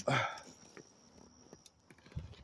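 A brief breathy vocal sound from a person right at the start, then near quiet with a few faint light clicks.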